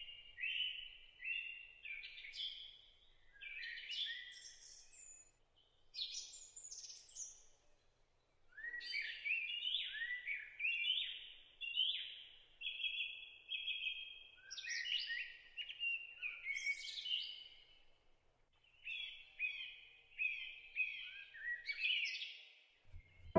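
Songbirds singing: phrases of short, quick chirping notes, repeated with brief pauses in between.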